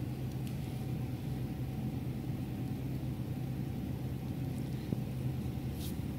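Steady low background hum with a faint higher tone held throughout, unchanging.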